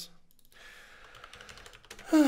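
Faint computer keyboard keystrokes in a quick, irregular run, starting about half a second in, as code is typed in an editor.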